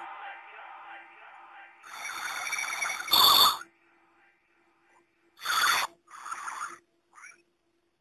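The end of the music fading out, then a string of short, loud edited-in sound effects, the loudest a sharp hit about three seconds in and another about five and a half seconds in, with a faint steady hum between them.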